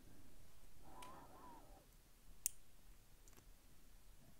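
Dimple pick working inside the keyway of an ERA Professional padlock: faint metal-on-metal scraping, then a single sharp click about two and a half seconds in.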